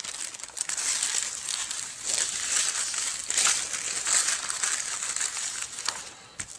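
Sheets of vellum and non-wax white graphite paper rustling and crinkling in uneven waves as the taped vellum is lifted and the graphite paper is slid underneath it.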